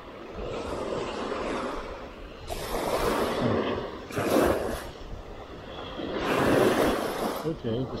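Small waves washing up on a sandy beach close by, the surf swelling and falling away three times, at about three, four and six to seven seconds in.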